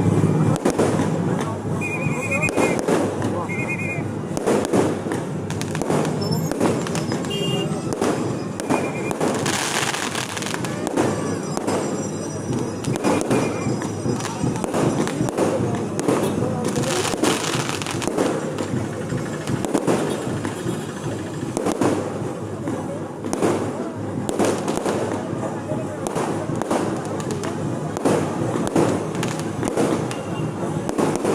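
Aerial fireworks going off in a dense, continuous barrage of bangs and crackles, with a brighter hissing flare-up twice along the way.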